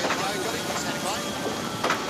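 Faint, indistinct voices over a steady rushing noise, with a short click near the end.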